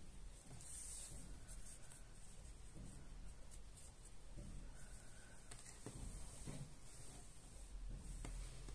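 Faint, soft scratching and rubbing of a crochet hook drawing yarn through mesh loops, with a few light rustles and taps of the fabric being handled in the second half.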